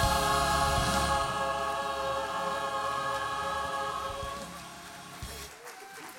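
Choir holding a final sustained chord over a low accompaniment; the chord fades out over the first few seconds and the accompaniment stops about five and a half seconds in.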